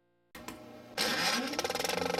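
A motor-like sound starts up about a third of a second in, jumps louder about a second in and runs with a fast, even rattle and a rising pitch.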